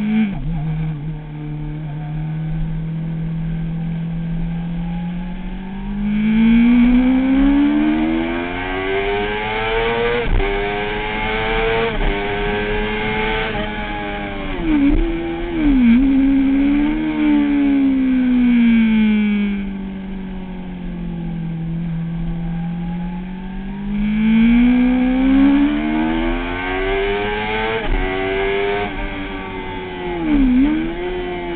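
Kawasaki ZX-6R inline-four engine heard from the rider's seat on track: revs climb hard through the gears with small dips at each upshift, fall away sharply under braking and downshifts, hold low and steady through slower corners, then climb again. Wind rushes over the fairing whenever the bike is at speed.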